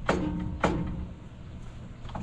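Two sharp knocks about half a second apart, each followed by a brief ringing tone, over a steady low rumble.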